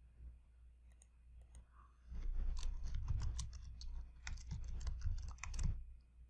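Typing on a computer keyboard. After a couple of isolated clicks, a quick run of keystrokes starts about two seconds in and lasts until near the end.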